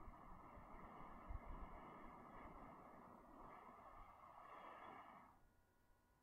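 A person blowing into a dry-grass tinder nest to coax a smouldering ember into flame: a breathy rushing in two long, steady breaths that stop about five seconds in.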